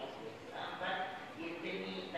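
Speech: a man addressing a gathering through a microphone, talking without pause.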